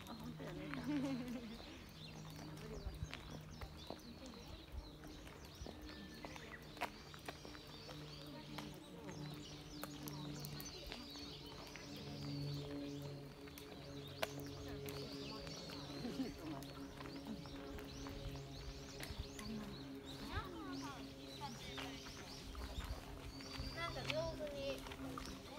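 Outdoor walking ambience: footsteps and occasional clicks on a paved path, murmuring voices of passers-by, and birds chirping in repeated short high calls over a steady low hum.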